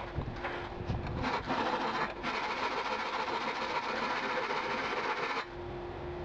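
A few handling clicks, then a steady rasping scrape of a file on the steel knife blank that lasts about three seconds and stops suddenly.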